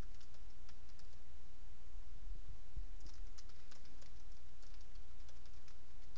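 Typing on a computer keyboard: faint, irregular keystroke clicks over a steady low hum.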